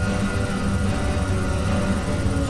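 Background music: a low, steady drone with held tones, dark in mood.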